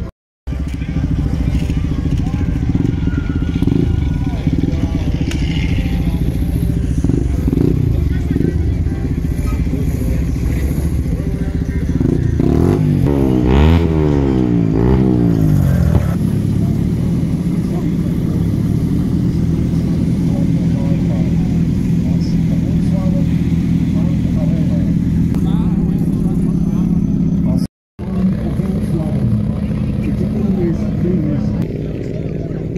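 Car engine running at idle, with a few revs in the middle where the pitch rises and falls several times before settling back to a steady idle.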